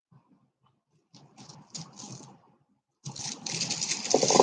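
Strands of round turquoise beads clicking and rattling against one another as they are handled. The sound is faint and scattered at first, then much louder and continuous from about three seconds in as the strands are gathered up.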